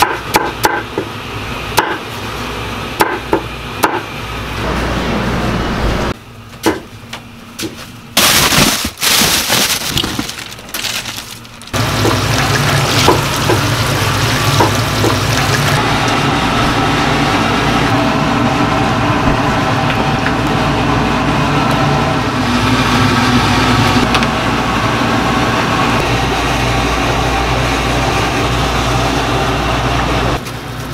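Kitchen knife chopping radish on a wooden cutting board: a run of uneven sharp strikes over the first few seconds. About eight seconds in comes a loud splashing, water-like noise, and from about twelve seconds on a steady rushing noise with a low hum as meat is rinsed and a large soup cauldron boils over its burner.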